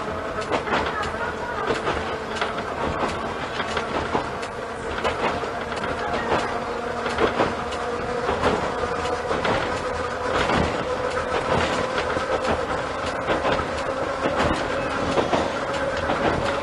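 Moha 41 electric railcar running along the line, heard from inside the front of the car: wheels click over rail joints at irregular intervals over a steady running rumble. A steady motor-and-gear whine climbs slowly in pitch as the car gathers speed.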